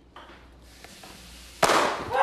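Faint room hiss, then about one and a half seconds in a single sudden loud bang with a short ring-out: a prank noise set off to startle someone.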